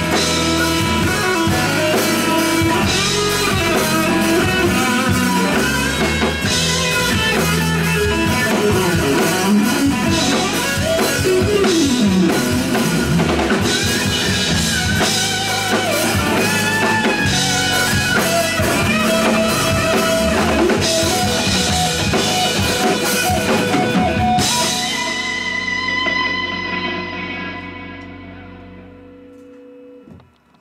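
Live rock band playing the end of a song on drum kit, bass guitar, electric guitar and acoustic guitar. About 24 seconds in the drums stop and the final chord rings out and fades away.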